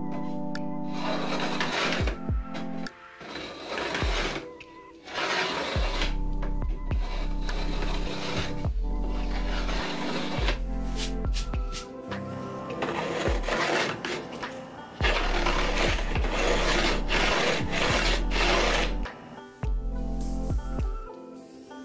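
A wooden marking gauge's pin scratching along a wooden board in several spells of strokes, scribing a line, over background music with sustained chords and bass.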